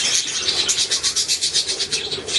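Budgerigar chattering: a fast, scratchy, high-pitched run of about ten clicks a second.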